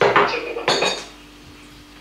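Tableware clinking as a bowl is handled on a table: two short clatters with a bright ring, both within the first second.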